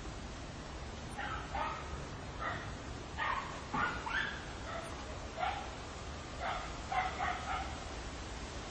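A dog barking in a run of about a dozen short yaps, starting about a second in.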